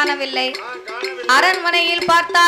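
Villupattu bow-song music: a singing voice over a steady held tone, with quick metallic clinking strikes from the troupe's percussion. The singing eases in the middle and comes back louder about a second and a half in.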